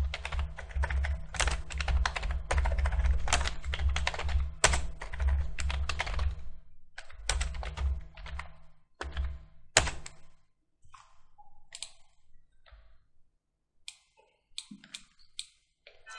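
Computer keyboard typing: a quick, dense run of keystrokes for about seven seconds, then slower, scattered key presses that thin out towards the end.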